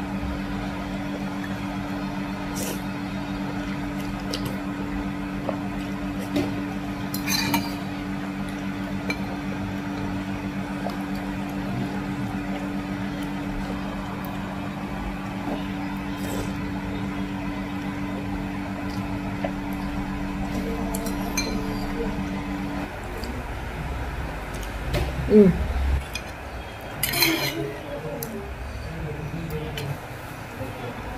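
A metal fork and spoon clink against a ceramic bowl as noodles are eaten, with occasional sharp clinks, the clearest about 7 seconds in and near the end. A steady low hum runs underneath and stops about 23 seconds in.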